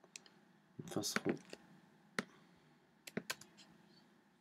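Sharp, separate clicks from computer keys and mouse being worked: a short burst of clicking about a second in, then single clicks spaced out over the next two seconds.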